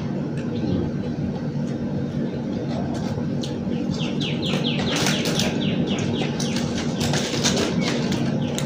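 Plastic spoons clicking and scraping in cardboard lunch boxes over a steady background hum and murmur. About halfway through, a run of quick falling chirps, about four a second, lasts some four seconds.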